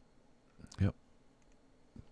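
A single computer mouse click, followed by a man briefly saying "yep", over quiet room tone.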